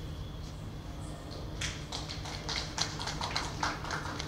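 Scattered hand clapping, several people applauding with irregular, overlapping claps, starting about one and a half seconds in over a steady low hum.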